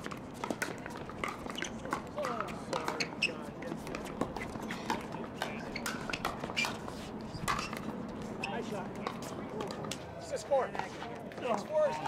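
Pickleball paddles hitting a plastic pickleball in a rally: sharp pops, roughly one every half second to a second, over background voices from around the courts.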